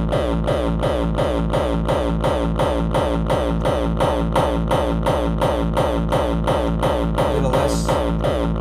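Distorted hardcore kick drum looping at a fast, steady tempo: each hit a sharp attack with a falling pitch sweep into a long, droning low tail. A short, punchy high-passed top kick is layered over the main kick to add attack.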